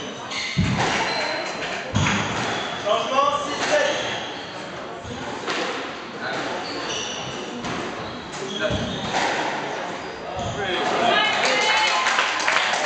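Indistinct voices echoing in a squash hall, with a few separate thuds of a squash ball.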